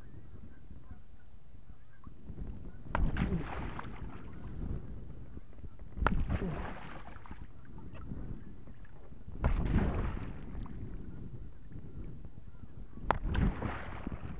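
Kayak paddle blade slapping flat onto the water four times, about three seconds apart, each a sharp smack followed by about a second of splashing as the blade is pulled back out: repeated high brace strokes.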